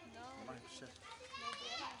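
Background voices: people talking with children playing and calling out, and a high child's voice rising in pitch near the end.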